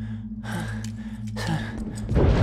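A man gasping and breathing hard in several short, breathy gasps, over a steady low drone.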